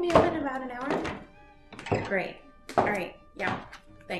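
A woman's voice in short phrases, with a thunk at the start. Soft music with held notes comes in about a second and a half in.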